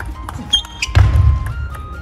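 Background music with steady held notes over a table tennis rally: sharp clicks of the ball off bats and table, then a heavy low thud about a second in as the point ends.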